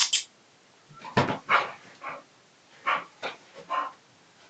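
English Bull Terrier barking: about eight short barks in uneven bursts, some in quick pairs.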